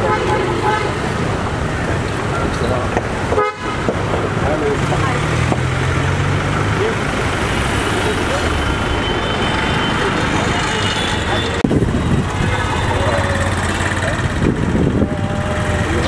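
Street traffic with vehicle horns tooting, and people's voices mixed in.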